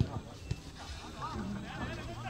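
Faint distant voices calling out on an open football pitch, with a soft knock about half a second in.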